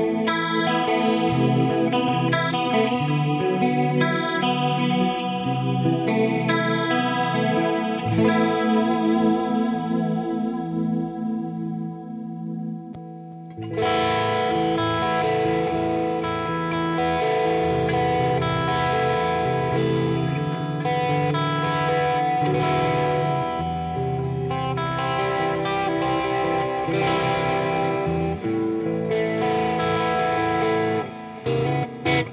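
Headless electric guitar played through an amplifier head into a load box and stereo cabinet-simulation plugins, in place of microphones on a cabinet. A passage of picked notes rings out and fades about twelve seconds in, then a louder, fuller passage starts about two seconds later.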